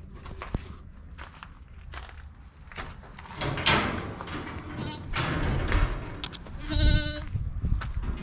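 A Boer goat bleats once, a single call of about half a second near the end. Before it come scattered knocks and rustling as a door is opened and someone walks out into the pen.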